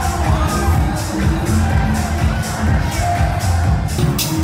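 Loud electronic dance music over a club sound system, with heavy bass and a steady beat.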